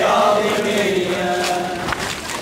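Men's voices chanting a Shia mourning lament (latmiya) in long held notes.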